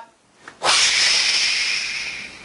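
A person's forceful breathy hiss, like a hard exhale or a drawn-out 'shhh', starting sharply about two-thirds of a second in and slowly fading over the next second and a half.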